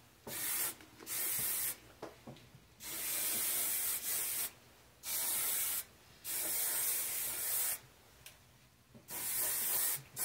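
A handheld spray bottle misting hair in about six separate sprays. Some are short and some last over a second, with short pauses between them.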